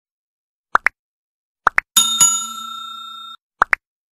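Edited-in intro sound effects: pairs of short, quick plops, then a metallic bell-like ring struck twice about two seconds in that rings on for over a second before cutting off suddenly, and another pair of plops near the end.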